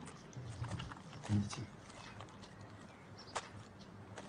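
Faint handling of a paper letter: scattered light clicks and rustles, with one sharper click a little before the end.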